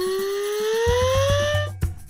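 Cartoon sound effect: a whistle-like tone gliding steadily upward, cutting off near the end, with a faint high shimmer above it. Under it runs background music with a steady low beat.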